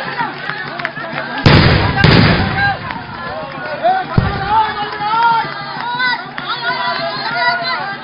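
A crowd of men shouting, broken by two loud explosive blasts about half a second apart, a second and a half in, that throw up a cloud of white smoke. A duller thud follows around four seconds in.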